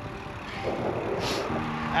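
Road traffic passing close by: the tyre and engine noise of a car swelling and fading.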